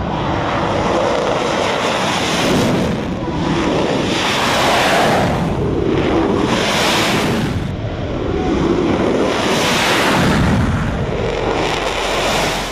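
F-16 Fighting Falcon's single jet engine at takeoff power as the fighter takes off down the runway: a loud, steady rushing roar that swells and eases several times.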